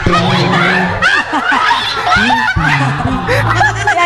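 Several people laughing hard at once, with high squealing bursts overlapping one another.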